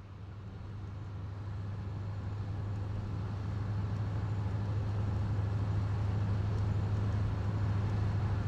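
A low, steady droning rumble with a hiss over it, slowly fading in and growing louder throughout.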